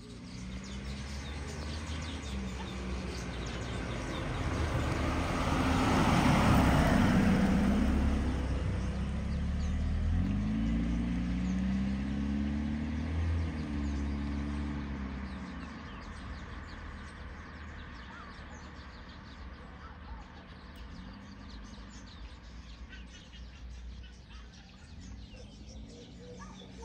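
A 1987 VW Fox with a 1.6-litre four-cylinder petrol engine and automatic gearbox drives up to and past the camera, loudest about six seconds in. Its engine note then climbs steadily as it pulls away up a hill, and fades into the distance, leaving faint bird chirps.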